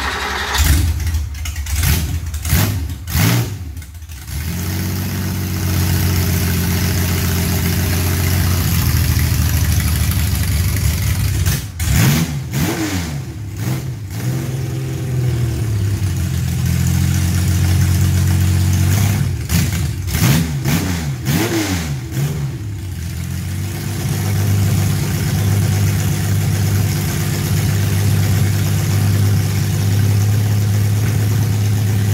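Freshly rebuilt air-cooled Porsche 911 flat-six, enlarged from a 3.0 SC to 3.5 litres and fed by individual throttle bodies, firing up with a few sharp blips before settling into a steady idle. It is revved in two short bursts of quick throttle blips, about twelve and about twenty seconds in, dropping back to idle each time.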